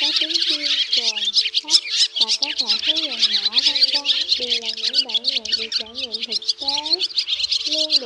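Dense, continuous twittering of a flock of barn swallows, a flock-call recording used as a trapping lure. An added music track with a wavering melody plays underneath.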